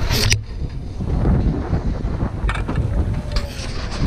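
Wind buffeting the camera's microphone with a loud, uneven rumble, broken by a sharp clatter right at the start and a few short clacks in the second half, from equipment and the chairlift loading area.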